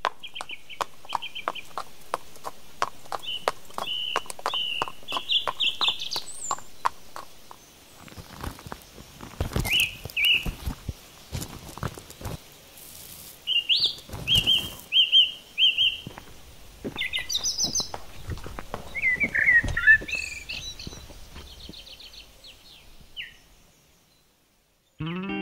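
Small birds chirping in short repeated phrases, with a horse's hooves clopping on a paved path at a steady pace, about three or four beats a second, for the first seven seconds or so. Scattered low thuds follow.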